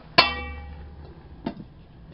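A metal dome lid put down on a wok: a loud clang that rings on and fades over most of a second, then a second, lighter clank about a second later as the lid settles.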